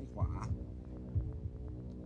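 Game-show suspense music bed: a steady low drone with low thuds about once a second, like a heartbeat.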